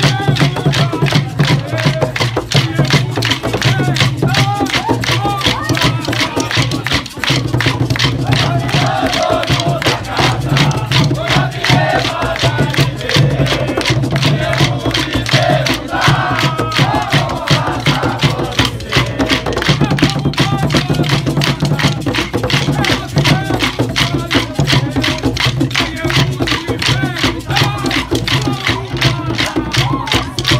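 Maculelê music: a group singing over atabaque drums and many wooden sticks clashed together in a fast, steady rhythm.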